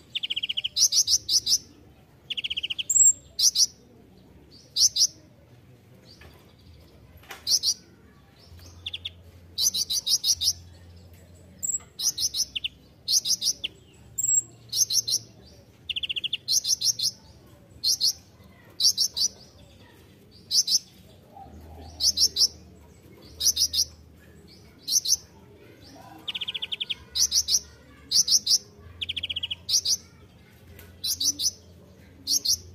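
Male kolibri ninja, a Leptocoma sunbird, singing: short, very fast, high-pitched trilled bursts repeated about once a second, with some lower buzzy notes between them.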